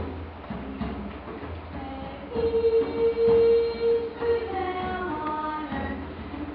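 Children's choir singing; the voices swell about two seconds in and hold one long note.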